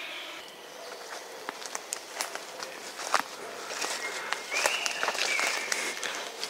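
Footsteps through forest undergrowth, with leaves and twigs rustling and crackling underfoot in an irregular pattern. A thin, high, steady whistling tone joins in for the last couple of seconds.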